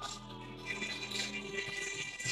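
Faint music: a person singing in long held notes over a steady droning tone.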